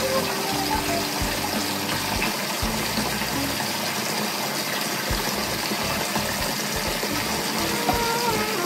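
Water running steadily in a bathtub during a baby's bath, with soft background music.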